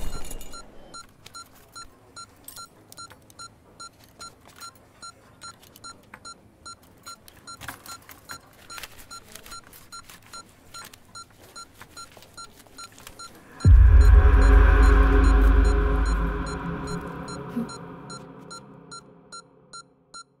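Patient monitor beeping rapidly and evenly, about two and a half beeps a second, under a film score. About fourteen seconds in, a loud, deep swell of music comes in and slowly fades away.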